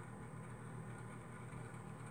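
Faint room tone: a steady low electrical hum with light hiss, and no distinct sound event.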